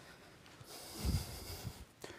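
Microphone handling noise as the microphones are swapped over: a rustle lasting about a second, with a low bump about a second in.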